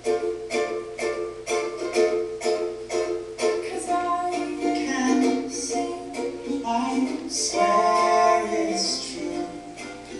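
Recorded pop song played back for a lip-sync performance: an even beat of plucked-string chords, with a singing voice coming in about four seconds in.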